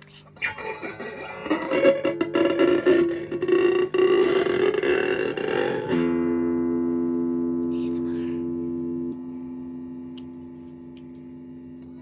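Electric guitar played with distortion: rough, noisy strumming for about six seconds, then a single chord left ringing and slowly fading away.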